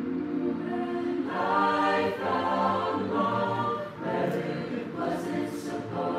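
Mixed men's and women's a cappella group singing held chords in harmony, swelling louder about a second in.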